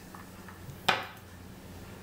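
A single sharp clink of glassware about a second in: the glass measuring cup being set down after pouring the lemonade.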